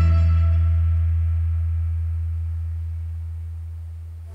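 The last low bass note of a live band's song, held alone after the final chord and fading away steadily.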